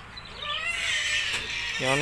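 A high-pitched animal cry that wavers and slides in pitch for about a second.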